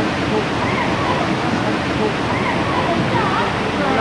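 A steady rushing wash of noise, like running water, with faint distant voices over it.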